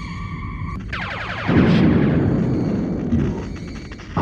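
Electronic science-fiction sound effects from a TV soundtrack. A held electronic tone gives way, about a second in, to a quick downward sweep, which runs into a loud low rumble that slowly fades.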